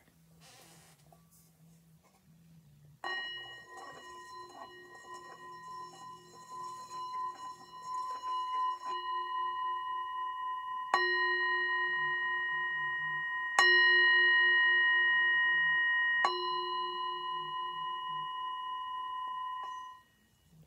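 A brass singing bowl played with a wooden striker. It is struck once, and its ring wavers and swells for several seconds as if the striker were circling the rim. Then come three more strikes about two and a half seconds apart, each ringing on, and the sound is stopped short at the end.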